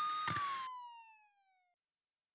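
A siren's single wailing tone, having risen in pitch, turns and glides downward as it fades away within about a second, with one soft thump as it begins to fall; then silence.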